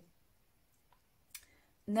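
A near-silent pause in a woman's speech, broken by a faint tick about a second in and a sharper short click a moment later; her voice comes back just before the end.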